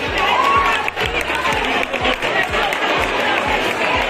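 A crowd clapping and cheering over dance music with a steady beat of about two beats a second.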